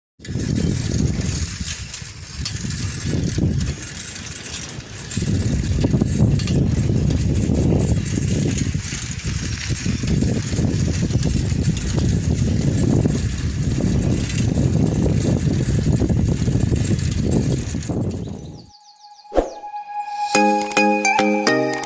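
Wind buffeting a phone microphone while riding a bicycle, a loud, uneven rushing with low rumble that surges and dips. It cuts off near the end, followed by a click and the first note of a chime.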